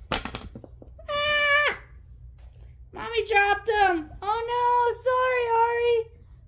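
A young child's high-pitched wordless vocal calls: a short call about a second in, then longer drawn-out calls from about three seconds in. A few light clicks at the very start.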